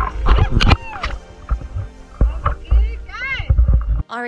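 Water sloshing and splashing against a camera held at the water's surface, with gusty wind rumble on the microphone. A short high-pitched cry comes about three seconds in.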